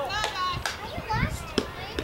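Several children's voices shouting and calling over one another, with a few short sharp knocks among them.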